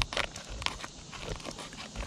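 A few short, sharp clicks and crackles as fingers press and pick at the brittle, cracked plastic base of a weathered pipe-boot flashing.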